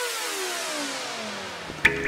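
Electronic intro sting: a synthesized sweep of several tones falling in pitch together, ending in a sharp hit near the end, which leaves a held low chord ringing.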